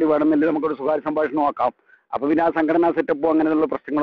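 Speech only: a person talking, with a short pause near the middle.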